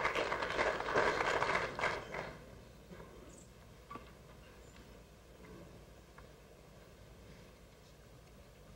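Audience applauding a good snooker shot, dying away after about two seconds; then a quiet hall with a few faint clicks.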